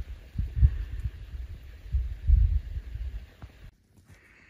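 Wind buffeting the microphone in uneven low rumbling gusts, cutting off suddenly near the end.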